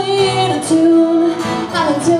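A woman singing live with her own acoustic guitar accompaniment, holding a long note near the middle.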